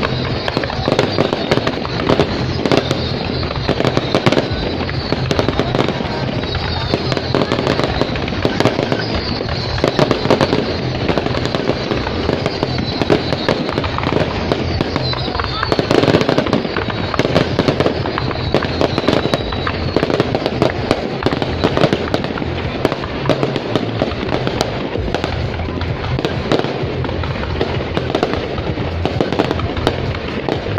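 A dense, continuous barrage of aerial fireworks: shells bursting in quick succession with bangs and crackling, and high whistles sliding in pitch now and then.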